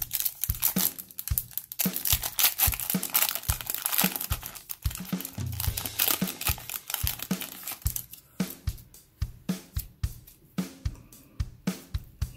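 Foil wrapper of a hockey card pack crinkling and tearing as it is ripped open and peeled off the cards, loudest for the first eight seconds or so, over background music with a steady drum beat.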